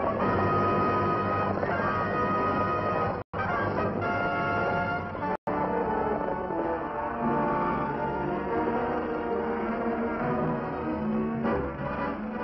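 Orchestral film score music, with long held tones over moving lower lines. The sound drops out completely for an instant twice, a few seconds in.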